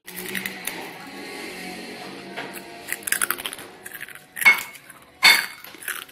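A spoon clinking and scraping against a plate during a meal: scattered light clicks, with two louder clinks near the end, over a faint steady hum.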